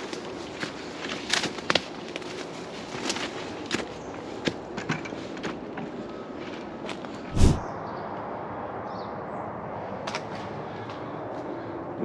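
Footsteps crunching and scuffing on a dirt trail strewn with dry leaves and twigs, walking uphill, with a single loud dull thump a little past halfway; after the thump the steps are fewer and softer.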